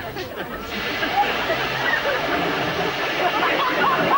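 High-pressure car-wash hose spraying water in a steady rush, with voices over it.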